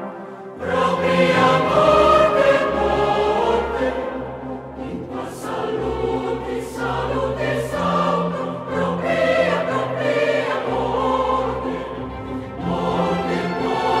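Choir and chamber orchestra performing a mid-19th-century Catalan sacred Matins setting, the full ensemble entering together about half a second in and holding broad sustained chords over a strong bass line. Sung 's' consonants hiss briefly a few times in the middle.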